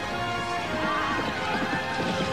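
A horse galloping, hoofbeats drumming, with a horse whinnying from about a second in, over music.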